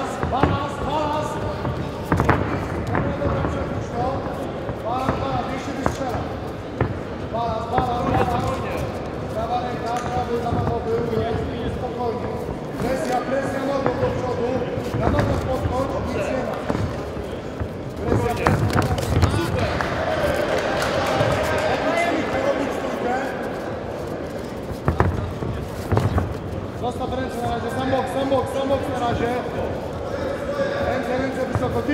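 Sharp thuds of punches and kicks landing and bare feet on the cage mat during an MMA bout, a few standing out louder, under continual shouting voices.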